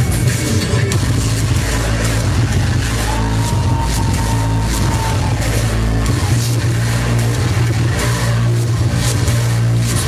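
Live industrial electronic music played loud over a club PA: a heavy, distorted bass pulse, with a held high synth tone coming in about three seconds in and ending around five seconds.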